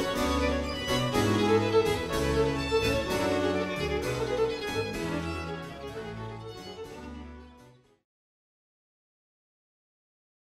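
Baroque instrumental music for strings and harpsichord, with a walking bass line, fading out about seven seconds in and then stopping into silence.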